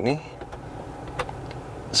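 Steady low hum of the BMW 520i F10's cabin, with a faint click a little past a second in.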